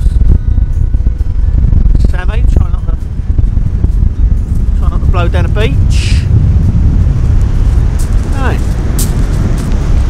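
Strong wind buffeting the microphone: a loud, gusting low rumble, with a man's voice breaking through in short snatches.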